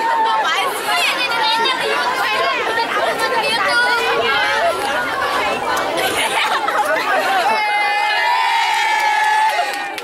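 Crowd of teenage girls chattering and laughing, many voices overlapping. Near the end one voice holds a long drawn-out call over the chatter.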